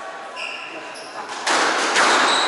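Rubber-soled court shoes squeaking briefly on a hardwood squash court floor, then a sudden loud, steady rushing noise from about a second and a half in.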